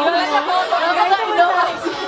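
Several young women talking over one another into handheld microphones, with overlapping chatter.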